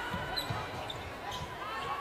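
Several low thuds of a netball and players' feet on an indoor court floor, over a steady background of faint crowd and hall noise.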